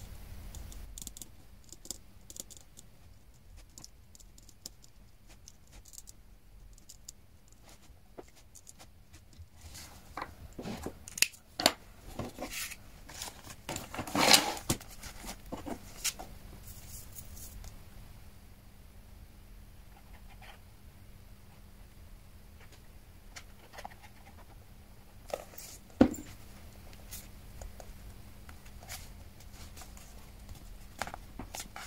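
Quiet handling of paper and card: scattered light clicks, scratches and rustles, with a louder rustle about halfway through and a single sharp click near the end.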